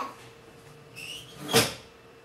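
A short high squeak about a second in, then a single sharp knock, the loudest sound, over a steady faint hum.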